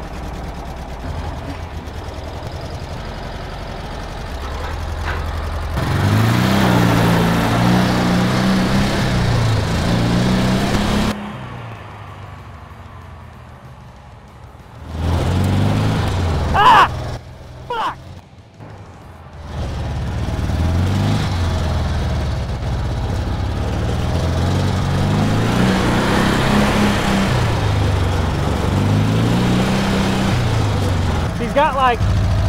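Dune buggy engine revving up and down over and over as the buggy is driven around on dirt, dropping quieter for a few seconds near the middle. The engine has almost no throttle response.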